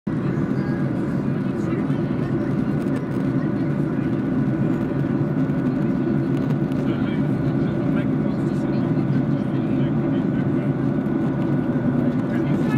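Steady cabin noise inside a Boeing 737-800 in flight, heard from a window seat by the wing: the even roar of its CFM56 engines and the air rushing past the fuselage, with a few faint steady tones above it.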